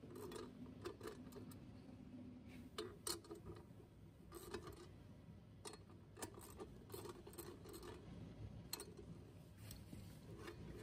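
Ratchet wrench and socket clicking and clinking on metal in irregular, faint taps as the nuts holding a steel mounting plate inside a steel enclosure are loosened.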